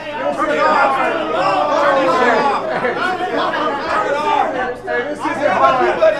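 Many voices talking and shouting over one another in a large room: a rap-battle audience reacting loudly to a line.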